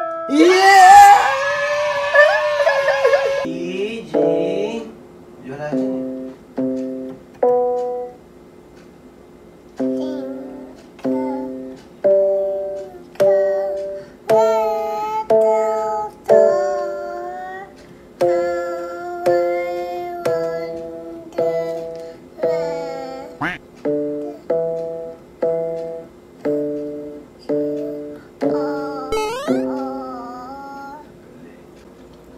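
An electronic keyboard is played one note at a time in a simple, halting melody, each note fading after it is struck, about one a second. At the start a loud voice rises over a note for a few seconds.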